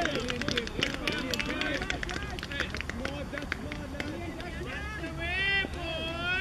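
Several people talking at once, with a quick run of sharp clicks in the first two seconds and a raised, high-pitched voice calling out near the end.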